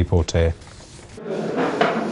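A man's voice reading the news stops about half a second in. After a short lull, background room noise with faint voices rises about a second later, the hubbub of a crowded meeting hall.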